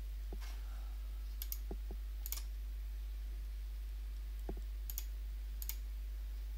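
A computer mouse clicking now and then, about eight short clicks, some in quick pairs, over a steady low electrical hum.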